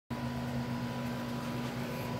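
A steady electrical hum with a low drone and a faint higher whine held evenly throughout.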